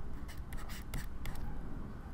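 Stylus writing on a pen tablet: a run of light, short taps and scratches as a word is hand-written.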